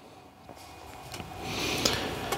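Blank DVD discs handled and slid against each other by hand: a soft rubbing that grows louder over the second second, with a few light clicks.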